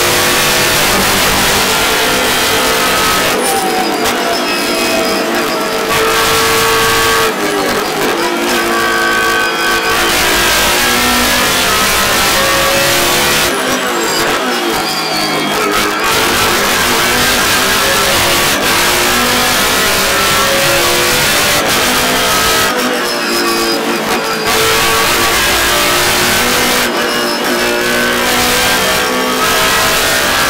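BMW Z4 GT3's 4.4-litre V8 race engine heard from inside the cockpit at speed, its pitch rising and falling as the car works through the gears. About five times, for a second or two each, the deep low end of the engine note drops away.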